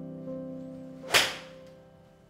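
A 6-iron swung and striking a golf ball: one sharp swish and strike about a second in, fading quickly, over soft background music.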